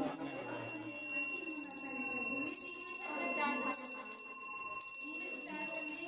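Battery-powered electric gong bell ringing without a break, a steady high ring, with children's voices over it.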